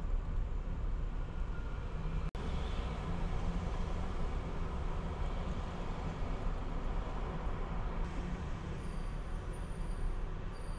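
Steady low rumble of background road traffic, broken by a momentary dropout a little over two seconds in.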